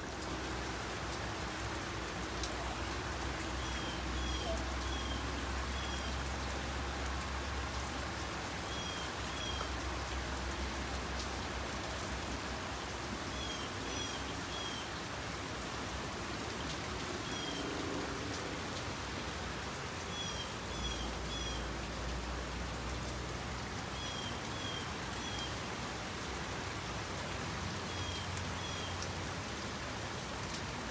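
Steady rain falling. A bird chirps through it in quick runs of two or three short high notes every few seconds.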